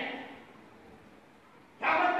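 A man's loud voice over a PA system in a large hall: a phrase trails off into the hall's echo, a pause of about a second and a half, then the voice starts again near the end.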